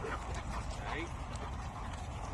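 Two dogs play-fighting, with a few short rising yips about a second apart over a steady low rumble.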